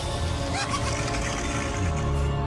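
Dramatic movie-trailer score with sustained notes, with a hissing wash layered on top; a deep bass drone swells in near the end.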